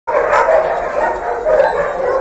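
Many dogs barking at once, a steady, unbroken din of overlapping barks.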